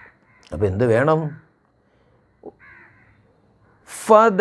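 A man's voice: one drawn-out utterance with a sliding pitch, starting about half a second in and lasting about a second, followed by a pause broken only by a faint click.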